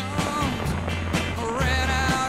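Background music: a song with a steady bass and drum beat under a wavering melody line.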